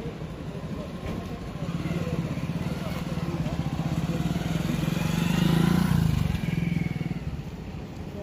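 Small motorcycle engine running at idle close by, with a rapid even putter, growing louder about five seconds in and dropping back a second later.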